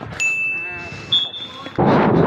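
A steady high-pitched tone held for about a second and a half, joined briefly by a second, higher tone, then a sudden loud burst of noise near the end.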